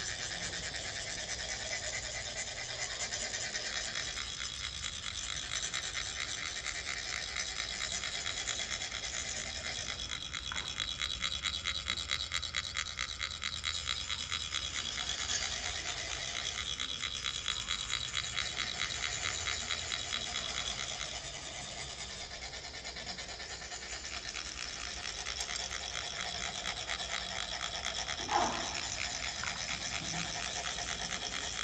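Metal chak-pur funnels being rasped, a rod or second funnel drawn along their ridged sides so the coloured sand trickles out in a fine stream: a continuous fine scraping buzz, thickest through the middle stretch and thinner in the last third. A brief louder sound stands out near the end.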